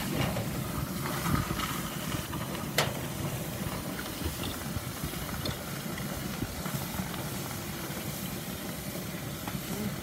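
Hot cast bronze quenched in a galvanized can of water, the water hissing into steam around the metal. The hiss starts abruptly and holds steady, with one sharp click about three seconds in.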